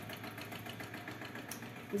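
The faint, steady whir of a small motor in the room, with a soft click about one and a half seconds in.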